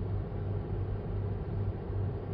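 Steady low hum with a faint even hiss inside a parked car's cabin, with no distinct events.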